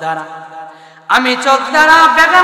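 A man's voice chanting a sermon in a sung, melodic tone through a microphone and sound system. A quieter held note trails off, then about a second in a loud new chanted phrase begins.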